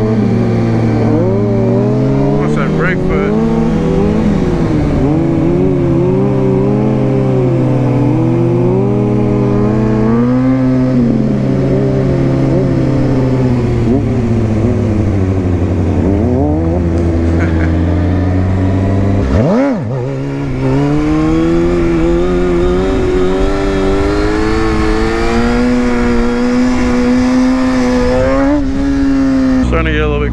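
Motorcycle engines idling and revving, their pitch rising and falling again and again, with one quick sharp rev about two-thirds of the way through.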